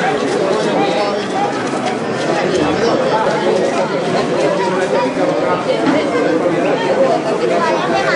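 Crowd of spectators chattering, many voices talking over one another at a steady level.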